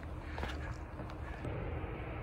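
Low, steady rumble of jet aircraft at the airport, much louder than it was a little earlier, with a faint hum in it and a few light footsteps on pavement.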